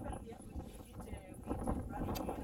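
Indistinct voices of people talking, broken and scattered, over a low, uneven rumble.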